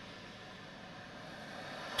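Faint, steady background hiss of a car's cabin, with no distinct sound.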